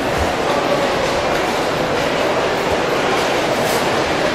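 Steady room noise of a busy electronics assembly floor, an even constant din with a couple of brief low thumps.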